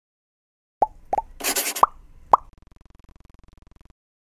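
Four short electronic bloops, each a quick upward blip, with a brief burst of hiss between the second and third. A faint fast buzz follows and cuts off suddenly near the end.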